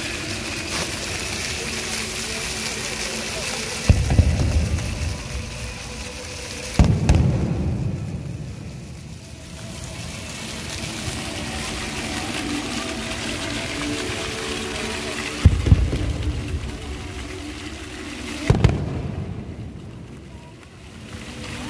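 Fountain jets spraying and splashing steadily, with four deep booms spread through it.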